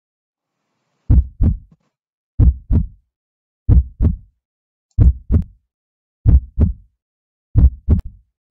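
Heartbeat sound effect: slow lub-dub double beats, six pairs about 1.3 seconds apart, starting about a second in.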